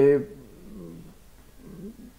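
A man's voice drawing out the end of a word, then two faint hesitation murmurs in the pause.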